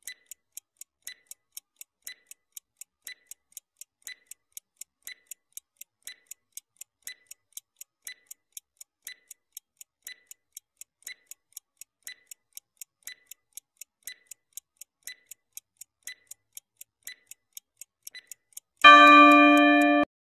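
Ticking countdown-timer sound effect: even clock ticks, about four a second with a stronger tick each second, running down a 20-second timer. Near the end, a loud, steady ringing tone sounds as the time runs out.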